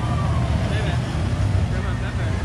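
Outdoor amusement-park ambience: a steady low rumble with faint voices of people walking past.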